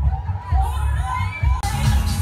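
A party crowd shouting and cheering over DJ-played dance music with a heavy bass beat. Near the end a bright high sizzle comes in over the mix.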